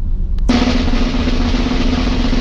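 A snare drum roll starts abruptly about half a second in and carries on as a dense, steady rattle with a low held tone beneath it. It plays over the steady low rumble of a car's cabin on the move.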